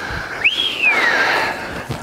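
A single whistled note, about three-quarters of a second long, that swoops quickly up and then glides slowly back down in pitch.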